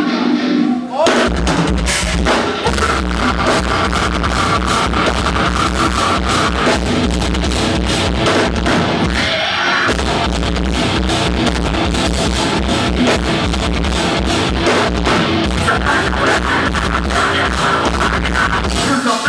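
Live rock band playing loud on electric guitars, bass and drum kit as the first song opens. The full band comes in about a second in, briefly drops its low end around the middle, and comes back in.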